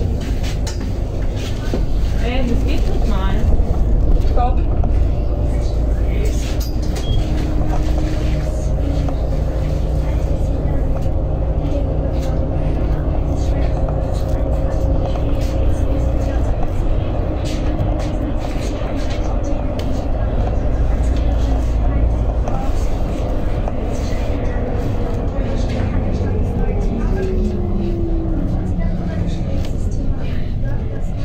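City bus running along the street, heard from inside: a steady low engine rumble with a humming drive whine. Near the end the whine drops in pitch as the bus slows.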